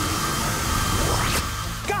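Cartoon sound effect of a ghost swirling into a trap: a steady rushing wind with a held whine, and a quick rising whoosh a little past halfway.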